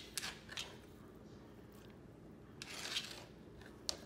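Chunks of feta cheese dropped onto pasta salad in an aluminium foil pan: two short soft rustles in the first second, a longer rustle about three seconds in, and a small click near the end.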